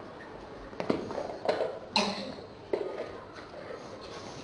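A handful of sharp knocks and clatters, about five in two seconds, over a low murmur of voices in a room: objects being picked up and handled.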